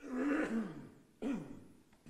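A man coughing twice: a longer cough right at the start and a shorter one a little past a second in.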